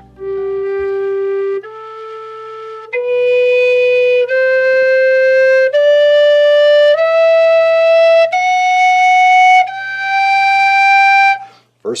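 Humphrey low G whistle playing a slow ascending G major scale, eight held notes stepping up from the low G to the G an octave above, each about a second and a half long. The first octave sounds very solid and in tune against a tuner.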